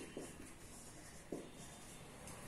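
Marker pen writing on a whiteboard: faint, short scratching strokes with a few soft taps.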